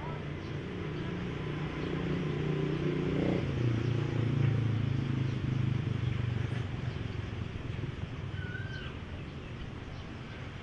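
A low, steady motor hum that steps down in pitch about three and a half seconds in and is loudest in the middle, with a short bird chirp near the end.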